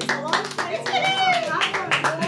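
A small group of people clapping their hands in applause, with voices calling out over the claps.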